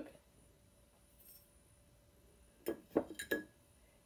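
Near-quiet kitchen, then three light clinks in quick succession near the end as a coffee scoop and a stainless steel travel mug are handled while scooping grounds.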